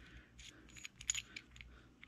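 Faint small metal clicks and ticks of an engine valve rocker arm and its threaded adjuster piece being handled and turned in the fingers, several quick clicks in the first second and a half.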